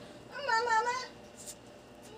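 A baby's single short, high-pitched, wavering vocal call about half a second in.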